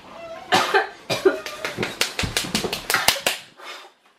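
A man coughing and gasping in pain from the extremely hot chip: one short voiced cough or groan, then a quick run of sharp, rapid breaths, roughly five a second, that stops shortly before the end.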